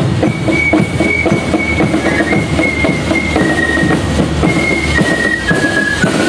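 A German Spielmannszug, a marching fife and drum corps, playing a march: high fifes carry a melody of held notes stepping up and down over a steady beat of snare drums.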